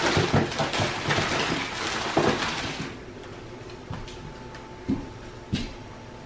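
Household rustling and clattering for about three seconds, then a quieter room with a faint steady hum and a few light knocks.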